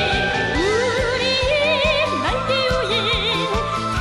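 A Korean military song: a high voice sings a melody with wide vibrato, over instrumental accompaniment with a steady beat.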